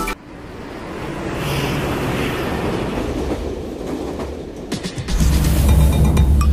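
A steady rushing noise that swells over the first couple of seconds after the music cuts out, then deep bass music comes back in about five seconds in.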